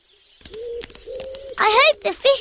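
A pigeon cooing softly in a cartoon woodland soundscape, in a few short level coos. A voice starts speaking near the end.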